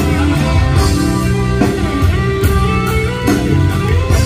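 Live rock band playing, with electric guitar to the fore over a drum kit.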